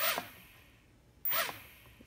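A small quadcopter's brushed motors and propellers whir up briefly twice, each burst dying away within about half a second, as the throttle is blipped on the ground after binding.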